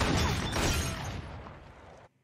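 A loud gunshot from a long gun, with stone jugs shattering, followed by a long rumbling decay that fades over about two seconds.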